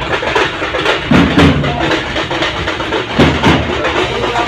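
Loud DJ music with strong bass beats, played through a truck-mounted DJ sound system.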